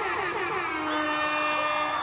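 Concert audience cheering and screaming after a song ends: many falling whoops at first, then a long steady tone held over the crowd noise from about a third of the way in.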